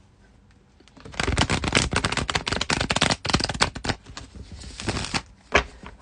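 A tarot deck being shuffled by hand: a dense, rapid flutter of card clicks starting about a second in and thinning out after about four seconds, with two sharp taps near the end.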